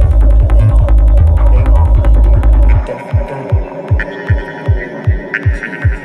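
Psytrance track at about 155 BPM: a dense, driving bass line under a steady kick drum. About three seconds in the bass drops out, leaving bare kick-drum thumps at roughly three a second. A high held tone enters a second later.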